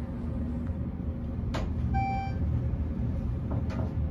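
AC gearless traction elevator car (a 1975 Armor unit modernized by Schindler) travelling upward, with a steady low rumble from the moving car. A click comes about one and a half seconds in, then a short electronic beep, and more clicks near the end.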